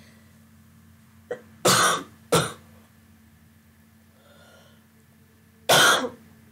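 A person coughing: two coughs close together about two seconds in, then a louder one near the end.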